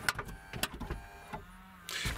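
Nissan Murano power tailgate catching its latch and its motor pulling the gate shut: a few clicks, then a steady motor whine that drops to a lower hum just before it stops.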